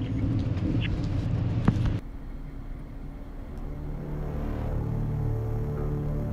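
A noisy rumbling background with one sharp click, then an abrupt cut about two seconds in to low, ominous droning music of held tones that slowly swells.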